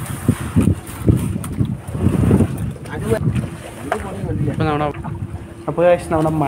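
Irregular knocks, thumps and rustling as men haul a fishing net and its ropes aboard a small boat, with wind buffeting the microphone. Men's voices call out near the end.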